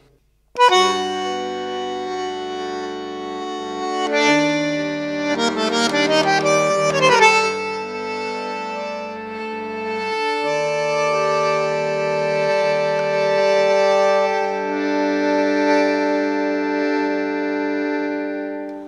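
Bandoneón playing a solo tango introduction: held chords, a quick run of notes around the middle, then long sustained chords that fade away near the end.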